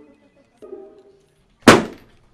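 A last plucked note of background music, then about 1.7 s in a single sharp, loud slap as a leather portfolio is slammed flat onto a wooden conference table.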